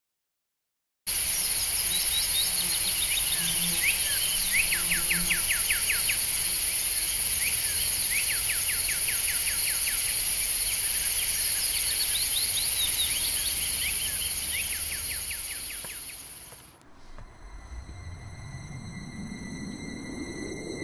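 Bush ambience that starts suddenly about a second in: a steady high-pitched insect chorus with repeated bird trills made of quick falling chirps. It fades out at around sixteen seconds, and then a low drone rises steadily in pitch near the end.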